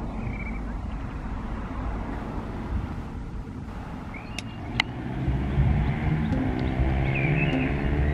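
Low outdoor rumble, then a motor vehicle's engine growing louder from about five seconds in and holding a steady hum. A couple of sharp clicks and a few short high chirps sound over it.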